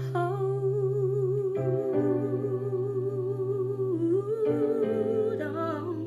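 A woman singing a long wordless held note with vibrato over sustained backing chords, then breaking off and holding a second, slightly higher note about four and a half seconds in.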